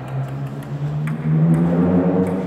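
Table tennis ball clicking off paddle and table in a rally, a couple of sharp ticks early on, over a low steady hum that swells louder in the second half and is the loudest sound.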